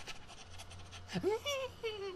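A dog whining: a drawn-out call that rises steeply in pitch about a second in, then a second, steadier note held near the end.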